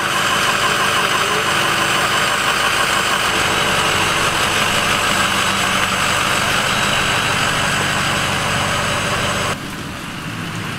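Dump truck engine running steadily at idle, then stopping abruptly near the end.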